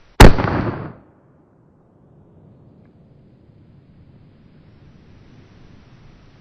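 A single shot from a Karabiner 98k bolt-action rifle chambered in 8x57 Mauser, fired just after the start, its report dying away within about a second.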